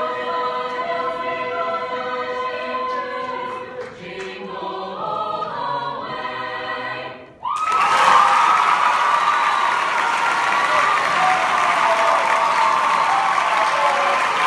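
Mixed choir holding a long final chord, cut off sharply about halfway through. The audience then bursts into loud applause and cheering, louder than the singing.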